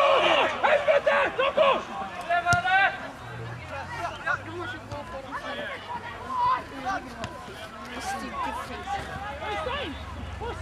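Voices talking and calling out on and beside a football pitch, loudest and closest in the first two seconds, with a single sharp knock about two and a half seconds in.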